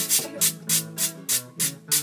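Instrumental break in live Puerto Rican jíbaro folk music: strummed acoustic guitar and a second stringed instrument, with a scraped or shaken hand percussion keeping a steady beat of about four strokes a second, between sung verses.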